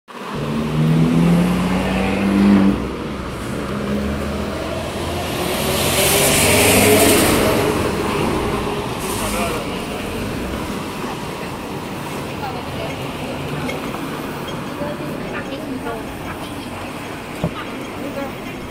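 Busy city street traffic: a vehicle engine running close by for the first few seconds, then a vehicle passing by about six to eight seconds in, over steady roadway noise.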